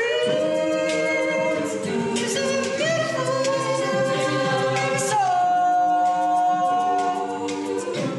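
Mixed-voice a cappella group singing, a male lead voice over sustained backing chords, with one high note held for about two and a half seconds near the end.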